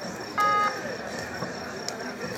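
A short, steady buzzer beep of about a third of a second, about half a second in, over the hubbub of a kabaddi ground.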